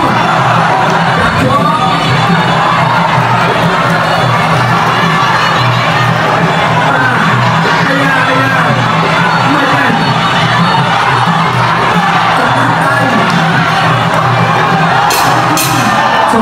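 Arena crowd cheering and shouting over traditional Kun Khmer ringside music during a clinch, with a couple of sharp clicks near the end.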